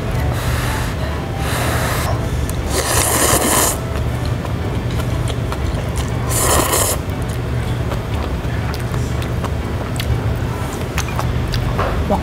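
Ramyun noodles being slurped from chopsticks in four loud, breathy slurps within the first seven seconds, the third the longest, followed by softer chewing clicks. A steady low room hum lies underneath.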